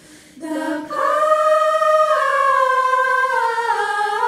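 Women's choir singing a cappella: after a brief pause for breath, a long held note enters about a second in and steps slowly downward.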